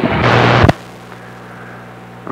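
CB radio receiver hissing with a burst of static that cuts off abruptly under a second in, as the squelch closes after the other station unkeys. A low steady hum stays underneath.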